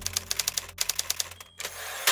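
Typewriter keys clacking in two quick runs of strokes with a brief break between, then a longer rasping sweep near the end.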